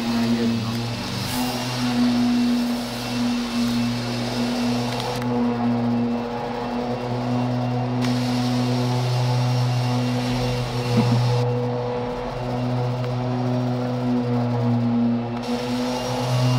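Steady low machine hum with a higher tone above it, holding one pitch throughout while its level wavers slightly.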